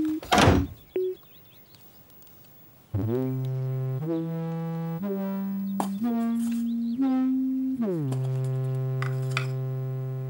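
A door slams shut with one loud thud. After a short quiet, a held musical note climbs upward step by step, about one step a second, then drops back to a long low note.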